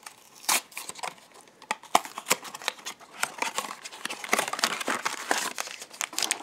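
Handling a cardboard blind box and the sealed black plastic bag taken out of it: irregular crinkling and small sharp clicks of card and plastic, getting busier in the second half.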